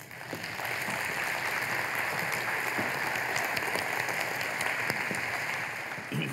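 Audience applauding, starting at once and holding steady, easing off near the end.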